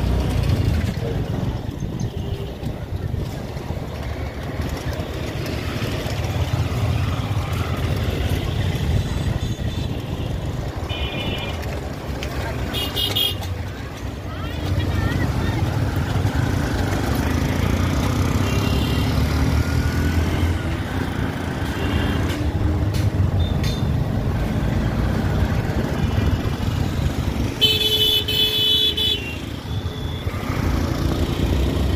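Busy city road traffic heard from a moving vehicle: a steady engine and road rumble, with vehicle horns tooting several times and the longest, loudest honk near the end.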